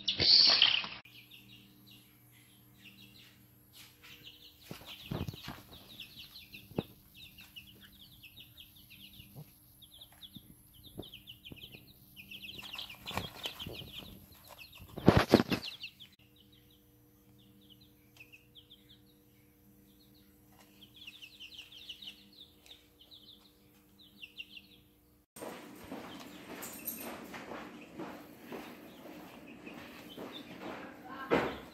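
Baby chicks peeping, short high cheeps repeated all through. Wings flap loudly just after the start, as a chick flutters up at the crate's edge, and there is another loud flurry about halfway through. A faint steady hum sits underneath for most of it.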